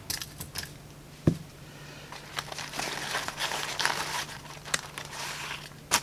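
Hands rustling through a fabric gear pouch and pulling out a small spiral notepad, with scattered small clicks. A single light knock comes about a second in.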